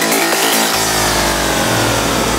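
Psytrance breakdown with the kick drum dropped out. A buzzing synth sweeps slowly downward in pitch, and a deep held bass drone comes in just under a second in.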